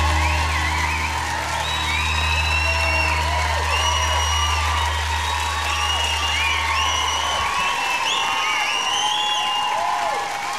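Concert audience cheering and applauding, with whoops, as the band's last low chord rings out. The chord stops about seven seconds in.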